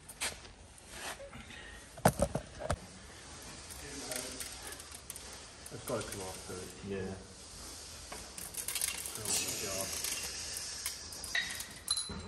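Light metal clinks and scrapes from steel gear parts being worked by hand inside a Chieftain tank gearbox casing, with a couple of sharp metal knocks about two seconds in.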